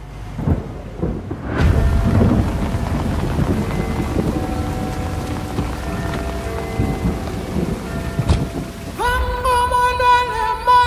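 Heavy rain with thunder, coming in suddenly about one and a half seconds in and carrying on steadily. Music sits faintly beneath it, and near the end a held musical note rises over the rain.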